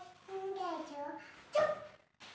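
A young child's high-pitched voice making two drawn-out calls that slide downward in pitch, then a short louder call near the end.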